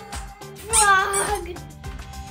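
A single meow about half a second long, falling slightly in pitch, over background music with a steady beat.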